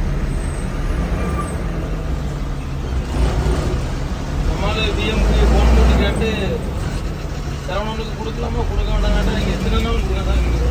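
Diesel engine of a state-run intercity bus running steadily as it creeps through traffic, heard from inside the front cabin, swelling louder about halfway through. Voices talk over it about halfway and again near the end.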